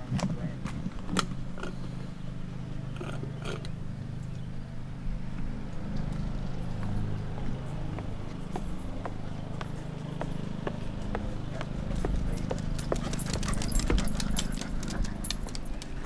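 A motor running steadily with a low hum that shifts pitch a few times, with scattered clicks and knocks that come more often near the end.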